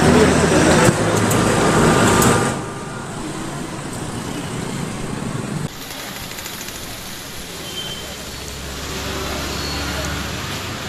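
Outdoor street ambience with road traffic. The first couple of seconds are louder and busy with voices, then it settles to a steadier, quieter traffic hum.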